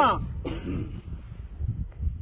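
A man's chanted phrase ends in a falling slide of the voice, followed about half a second in by a short throat-clearing sound. After that only a low, uneven wind rumble on the microphone remains.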